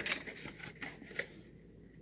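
Thin paperboard from a cake-mix box being handled: a few faint rustles and light taps in the first half, then nearly quiet.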